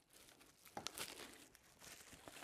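Clear plastic wrapping faintly crinkling as it is handled and pulled off a hydraulic jack part, with a few sharper crackles about a second in.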